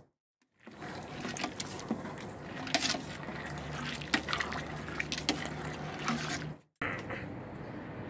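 Water splashing and sloshing in a large aluminium stockpot as a hand stirs the soaking deer corn, with many small splashes and a steady low hum underneath; it cuts off suddenly near the end.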